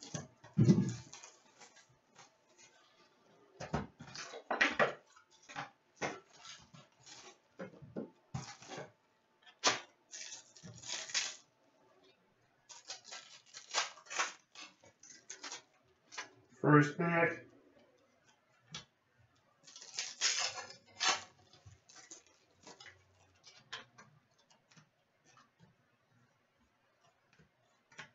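A cardboard hobby box of trading cards being opened and a foil card pack torn open, then cards shuffled and laid down on a glass counter: a busy run of short crinkles, rips and light taps.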